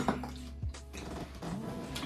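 Quiet background music, with a sharp clink of a small drinking glass set down on a tabletop right at the start and a fainter knock a moment later.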